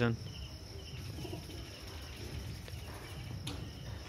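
Crickets chirping steadily at night, a continuous high-pitched trill over low background hum.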